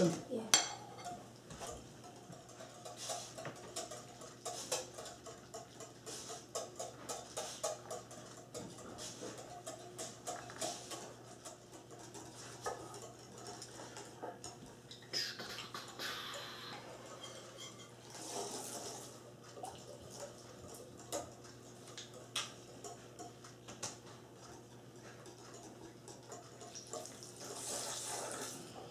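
Wire whisk stirring a sour cream mixture in a mixing bowl, the wires clicking and scraping against the bowl in irregular taps, with a few longer scraping sounds in between.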